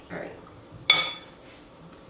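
A metal spoon strikes a dish once about a second in, giving a sharp, ringing clink.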